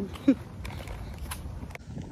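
Walking noise on a path: a low rumble with scattered clicks from footsteps and stroller wheels. A short rising vocal sound comes just after the start.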